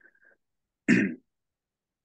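A man clears his throat once, a short burst about a second in.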